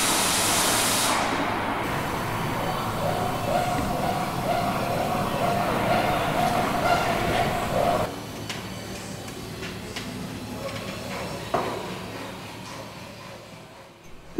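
Pneumatic tool on an air line in a hangar: a loud hiss of air, then a steady whine for about five seconds that stops abruptly about eight seconds in. After that a much quieter background fades down, with one sharp click.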